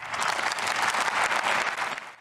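Applause in a large parliamentary chamber: many people clapping steadily together.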